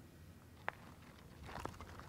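A single sharp click, then, from about one and a half seconds in, faint crunching of gravel as a digital measuring wheel starts rolling and the person pushing it steps along.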